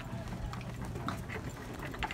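Footsteps on a concrete dock, a string of short irregular steps over a steady low rumble.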